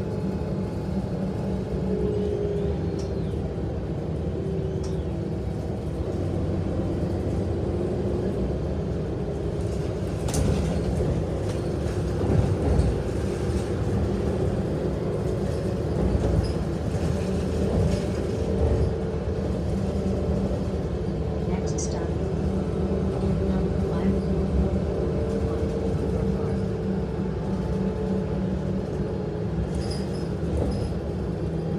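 Steady drone of a city transit bus heard from inside the cabin while it cruises: engine and road noise, with a few short sharp rattles from the bus body scattered through.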